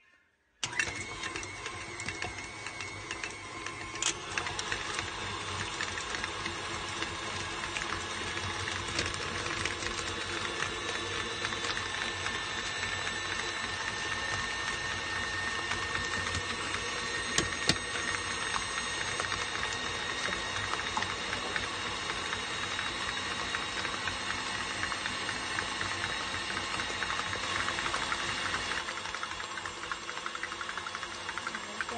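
KitchenAid Classic Plus stand mixer switching on about half a second in and running steadily, its wire whip beating blocks of cream cheese in the steel bowl. The motor holds a steady whine, with a couple of sharp clicks along the way.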